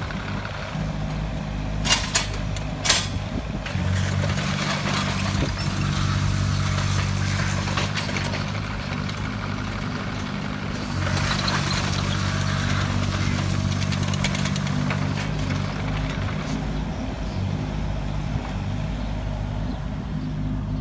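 John Deere 17D mini excavator's diesel engine running steadily while the machine tracks and turns, the engine note growing louder under hydraulic load about four seconds in and again around eleven seconds. Two sharp metallic clanks come about two and three seconds in.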